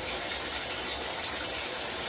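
Water running steadily from a bathtub tap, an even rushing hiss.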